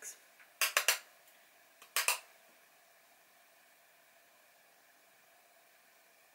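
Sharp plastic clicks and taps of a makeup brush against a blush compact as blush is picked up: a quick cluster of three or four clicks about half a second in and two more about two seconds in, then near silence as the blush goes on.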